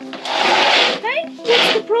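A hen making harsh, raspy squawking calls: one long call, then a shorter one about a second and a half in.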